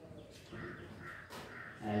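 A crow cawing faintly in the background, short harsh calls, over the quiet scratch of chalk on a blackboard, with a brief tap a little after a second in.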